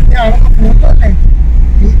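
Steady low rumble of a car's engine and road noise heard inside the cabin while driving, with a person talking over it in the first second.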